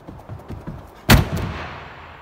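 Gymnast's running footsteps on a vault runway, then a loud bang about a second in as he hits the springboard to take off, ringing on in the big gym hall.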